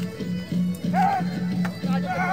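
Melee of fighters shouting, with a few sharp clashes of weapons on shields. A steady low musical drone runs underneath.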